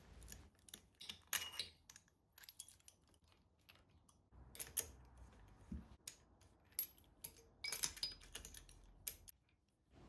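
Faint, scattered metallic clicks and clinks, some in short clusters, of a spark-plug socket and spanner working in the plug holes of a 1974 Kawasaki Z1B's air-cooled cylinder head as the spark plugs are unscrewed and taken out.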